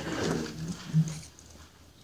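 A man's voice trailing off mid-sentence with a drawn-out hesitation sound, stopping a little over a second in, followed by a quiet pause of room tone.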